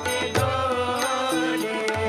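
Live Marathi devotional folk song: a singing voice, amplified through stage microphones, over a steady beat of percussion strokes.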